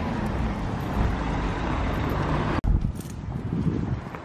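Outdoor street noise with wind buffeting the microphone: a steady low rumble and hiss. It drops out for an instant about two and a half seconds in, then carries on a little quieter.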